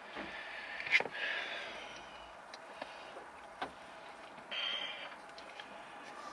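Handling noise of a phone and charging cable being fiddled with: a sharp click about a second in, a few lighter clicks, and two short spells of rustling.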